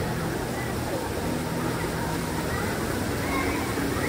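Steady rush of running water through a children's tube water slide and play structure, with faint voices in the background.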